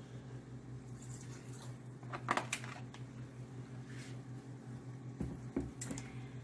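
Soft squishing and a few light clicks of a spoon stirring cooked macaroni in a pot, over a steady low hum.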